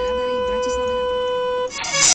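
A car horn held in one long, steady, single-note blast that cuts off near the end, followed by a short loud burst of noise.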